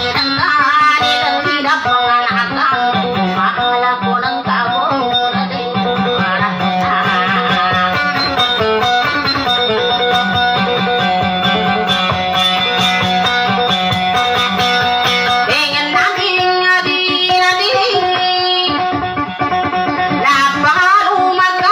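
Amplified plucked string instrument playing a busy melody over a steady low drone note. The pattern changes to new, higher notes about 16 seconds in.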